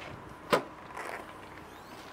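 Tailgate of a 2008 Volvo XC60 being opened: a single sharp clunk of the latch releasing about half a second in, then a quieter brief noise as the hatch comes up.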